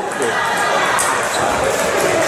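Table tennis rally in doubles: the plastic ball clicking sharply off the rackets and bouncing on the table in quick succession, with echoing hall chatter behind.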